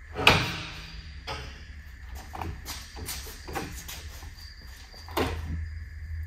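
Metal scissor steps with landing gear being pulled out and unfolded from under a camper's rear bumper: a loud metallic clank about a quarter second in, then a series of lighter clacks and rattles as the accordion steps extend to the ground.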